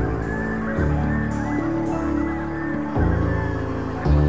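Live electronic music: sustained synthesizer chords over a deep bass line that changes note about once a second, with short rising-and-falling synth phrases on top.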